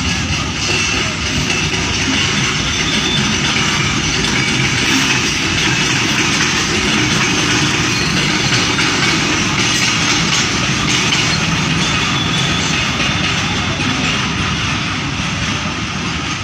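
Runaway goods-train wagons rolling along the track with no locomotive attached: a steady, loud noise of steel wheels running on rails.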